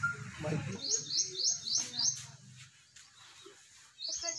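A small bird chirping: a quick run of about five high, short notes about a second in, over faint voices.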